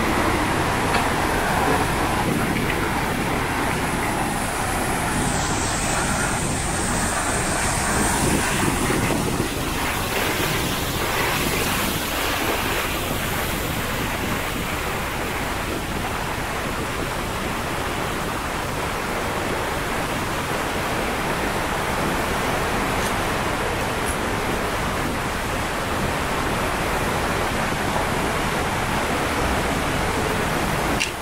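A shallow mountain stream rushing over rocks and boulders, a steady wash of noise.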